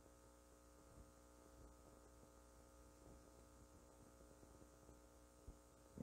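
Near silence: a faint steady electrical hum, with one faint click about five and a half seconds in.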